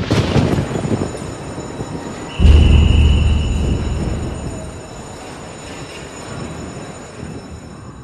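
Film sound effect of a train in a station: a rumbling noise starts suddenly, then about two and a half seconds in a heavy low rumble with a steady high whine sets in. It fades away slowly over the rest.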